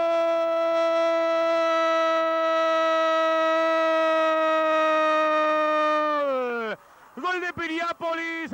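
Male football commentator's drawn-out goal cry, one long "gol" held on a steady pitch for about six and a half seconds, sliding down in pitch as it ends; ordinary commentary resumes near the end.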